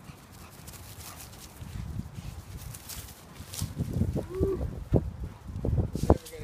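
Dogs, a pit bull and a Muscle Mastiff, playing chase on a grass lawn. In the second half there is a run of dull thuds from running paws, getting louder, with a brief dog vocalization a little past the middle.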